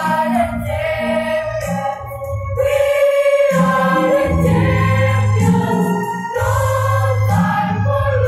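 A mixed choir of young women and men singing together, holding long notes.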